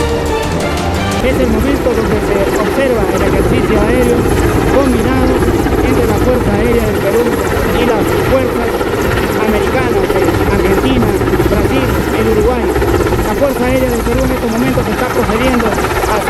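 Mil Mi-17 helicopter hovering low overhead: a loud, steady rotor and twin-turboshaft engine noise.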